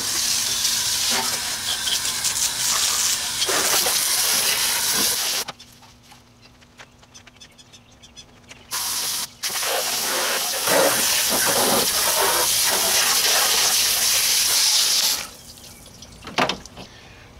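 Garden hose spray nozzle jetting water onto the pickup's radiator support and engine bay, washing it down. The spray runs for about five seconds, stops for about three, gives a short burst, then runs again for about six seconds.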